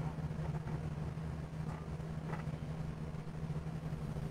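A steady low hum under faint room noise, with no distinct event.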